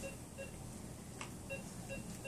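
Medical monitor beeping: short electronic beeps repeating about two or three a second, with a gap in the middle. One light click about a second in.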